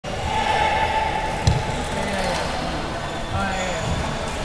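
Indoor floorball game: players' voices calling across the court, with one sharp knock about one and a half seconds in.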